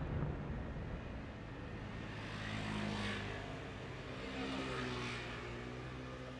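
The echoing rumble of the last fireworks bursts dies away in the first second. A lull follows, filled by a steady engine hum that swells twice, like motor vehicles passing.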